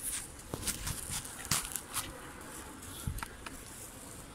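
Footsteps on a wet, muddy field bank: a scatter of irregular soft scuffs and clicks.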